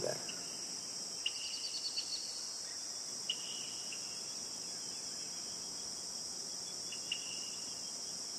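Steady, high-pitched chorus of crickets, with a few brief chirps scattered through it.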